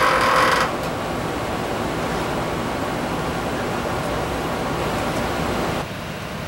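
Steel suspension cable sliding through a lighting-fixture gripper as the gripper is pushed up it: a short rasp that ends under a second in, followed by a steady, even hiss.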